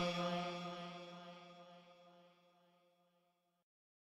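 The last held sung note of an Islamic gazal, a single steady vocal tone that fades out over about two seconds.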